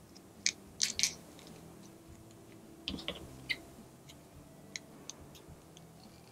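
Plastic fastener tape (3M Dual Lock) handled in the fingers, giving a few short crinkling, crackling bursts around half a second, one second and three seconds in.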